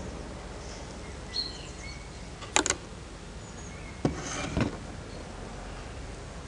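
Light clicks and scrapes of a soldering iron worked against a wooden frame bar and beeswax starter strip: two quick clicks about midway, then two more with a short scrape about a second and a half later. Steady background noise throughout, with a bird chirping faintly early on.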